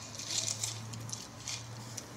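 Faint rustling of a newspaper being unfolded and handled close to a microphone, in short scattered bursts, over a steady low electrical hum.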